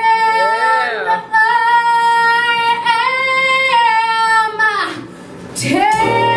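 A woman singing solo live into a microphone: a short bending phrase, then one long high note held steady for about three and a half seconds, breaking off about five seconds in before she starts the next phrase near the end.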